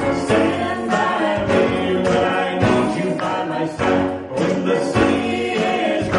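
Gospel vocal group singing in close harmony over instrumental accompaniment.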